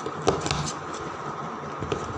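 Plastic 3x3 Rubik's cube being turned by hand: a few sharp clicks of the layers in quick succession about a quarter of a second in, then a softer rustle of handling, and one more click near the end.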